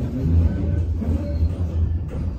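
Interior running noise of a Class 399 CityLink tram-train in motion: a steady low rumble from the running gear, heard from inside the passenger saloon.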